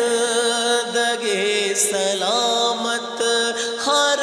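A man singing an Urdu naat into a microphone, holding long, ornamented notes that slide in pitch, with no clear words.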